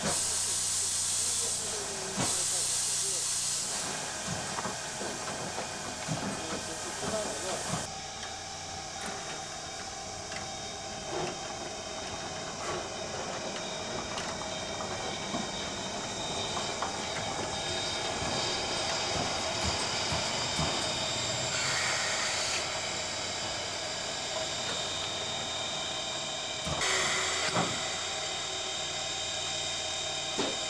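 JNR C57-class steam locomotive C57 1 standing and venting steam with a steady hiss. The hiss is loud for the first several seconds, eases off, then comes in two short louder bursts, one past the middle and one near the end.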